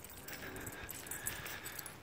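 Quiet outdoor background: a faint even hiss with light, scattered rustles.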